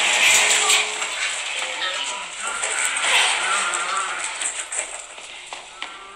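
Film soundtrack mix of music and voices over a dense noisy wash, loud at first and dying down over the last two seconds.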